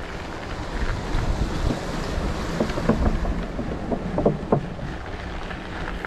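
Wind rushing and buffeting on the camera microphone of a rider on an SE Racing OM Duro bike rolling along a dirt path, with tyre noise from the dirt underneath. A cluster of short knocks and rattles comes in the middle, about two and a half to four and a half seconds in.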